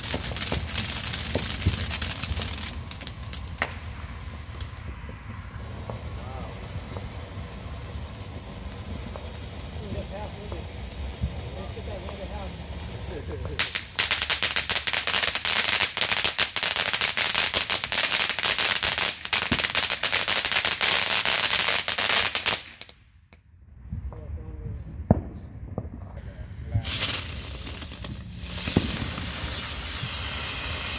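Ground fountain fireworks hissing and crackling as they spray sparks. About halfway through comes a louder, denser run of rapid crackling that cuts off suddenly; a few sharp pops follow, and another fountain starts near the end.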